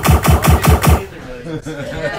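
Machine-gun burst of about six rapid shots in the first second, then voices.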